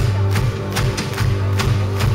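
Live pop-rock band playing an instrumental passage between sung lines: a steady drum beat over electric bass guitar.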